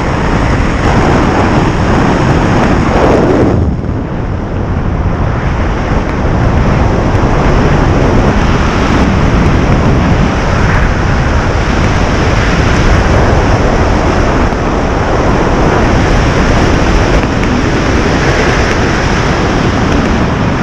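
Wind rushing over a handheld camera's microphone during a tandem parachute canopy ride: a loud, steady roar that gusts up and down. It eases briefly about three and a half seconds in.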